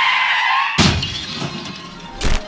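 Car-crash sound effect: a high tyre screech cut off about a second in by a loud smash of breaking glass that dies away quickly.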